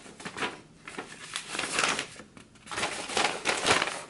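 Paper rustling and crinkling as a packing slip is unfolded and handled, a string of short rustles that grows busier in the second half.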